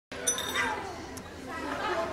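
Several people talking at once in a hall, with two brief light clicks in the first second or so.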